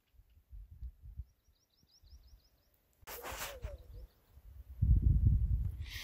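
A small bird's quick series of about eight high chirps, then wind on the microphone: a short hiss about three seconds in and heavier low rumbling near the end.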